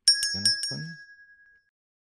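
Subscribe-button overlay sound effect: four quick clicks and a bright bell ding that rings out and fades over about a second and a half.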